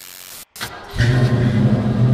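A short burst of hiss, then about a second in a car engine comes in loud and runs steadily with a low hum.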